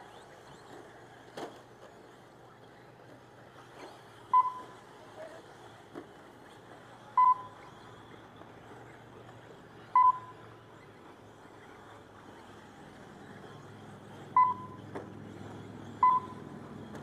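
Short electronic beeps, all at one pitch, come a few seconds apart over a faint outdoor background. They are the lap-counting beeps of the RC race timing system, sounded as cars cross the start-finish line.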